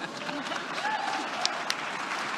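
Audience applause swelling up, with sharp individual claps standing out and a few faint voices mixed in.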